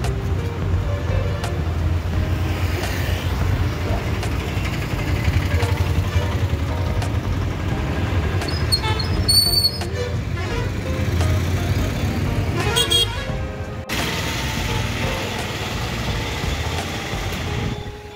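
Street traffic running past with a steady low rumble, and a vehicle horn tooting briefly about nine seconds in. The sound changes abruptly near the fourteen-second mark.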